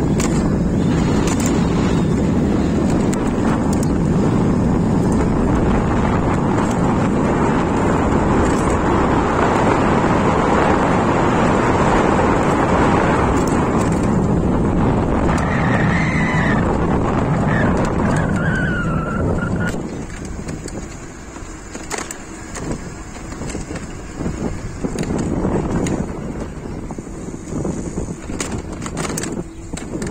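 Riding noise from an electric bike on concrete paving: steady tyre rumble and wind rushing over the microphone, which drops away about two-thirds of the way through as the bike slows. Two brief high squeals come shortly before the drop, and scattered clicks and knocks follow it.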